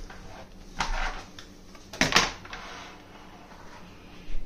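Plastic container lids knocking and sliding on a hard tile floor as they are pushed into place, with a knock about a second in and a louder clatter about two seconds in.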